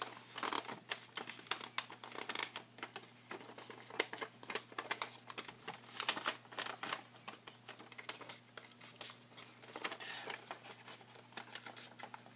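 A sheet of origami paper rustling and crinkling in frequent short rustles as it is folded and creased by hand.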